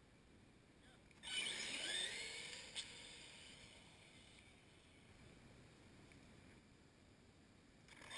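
Two radio-controlled trucks launching from a standstill about a second in: a sudden burst of high electric-motor whine and tyre noise that glides in pitch and fades over a few seconds as they speed away, with a sharp click near the three-second mark.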